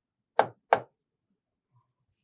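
Two short, sharp taps of a stylus on the glass of an interactive touchscreen board while numbers are written, about a third of a second apart.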